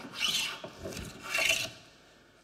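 Metal smoothing plane cutting along a board's bevel in two main strokes about a second apart, each a short rasping sound of a light shaving being taken as the bevel is trued up after scrub-planing.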